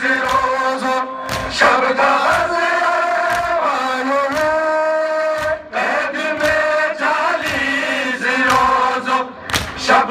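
Men chanting a noha, a Shia mourning lament, over a crowd of mourners beating their chests in a steady rhythm.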